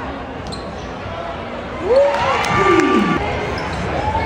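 Basketball dribbled on a hardwood gym floor amid spectator noise. About two seconds in, loud drawn-out shouts from the crowd rise and fall.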